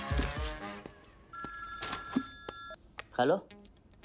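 A mobile phone ringing: one steady electronic ring of several pitches sounding together, held for about a second and a half before it cuts off.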